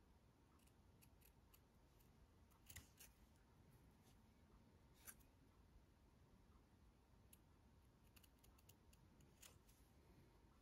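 Faint snips of small scissors cutting through felt: a handful of short, quiet clicks spread over several seconds, the clearest about three and five seconds in and a pair near the end.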